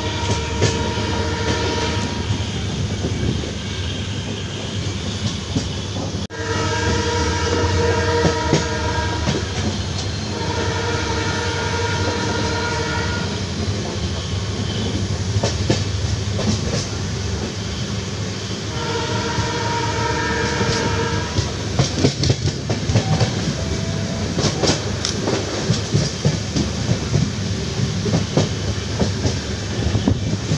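Passenger train running at speed, heard from an open coach doorway, with a steady rumble of wheels on rail. The locomotive's two-tone horn sounds four long blasts of about three seconds each during the first two-thirds. From about two-thirds of the way through, a quick clatter of wheels over rail joints takes over.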